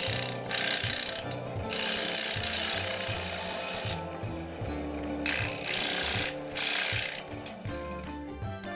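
Scroll saw blade cutting through thin plywood, the cutting noise coming and going in stretches, the longest lasting about two seconds from roughly two seconds in. Background music with a steady beat plays underneath.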